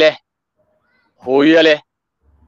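Only speech: a man speaking Somali, two drawn-out syllables with dead-silent gaps between them, as if cut by a call's noise gate.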